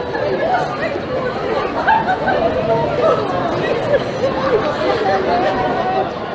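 Several people talking at once in a crowd: continuous, indistinct chatter with no single clear voice.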